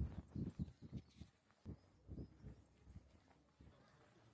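Footsteps on stone paving: soft low thuds about two or three a second, fading out near the end.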